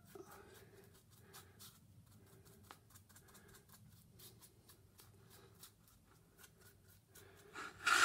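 Small paintbrush scrubbing and dabbing thick white gesso into the crevices of a wooden tag: faint, irregular bristle scratches and light taps. A brief louder rustle comes near the end.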